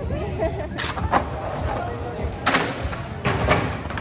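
Skateboard knocking on concrete several times, sharp clacks over the chatter of a crowd.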